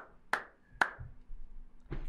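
Hand clapping at a slow even pace, about two claps a second, stopping a little under a second in. Then a low rumble and a thump near the end as a person drops into a padded gaming chair.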